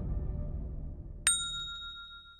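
Logo-intro sound effect: a low rumble fading away, then a single bright metallic ding about a second and a quarter in that rings out and fades.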